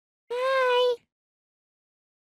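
A voice calling a drawn-out "hi" on one nearly steady pitch, lasting under a second, starting about a third of a second in.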